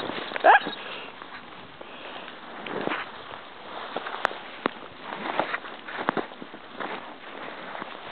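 Footsteps crunching through snow in irregular steps as a person and a small dog walk a packed track. About half a second in there is one short high-pitched squeak or cry, the loudest sound here.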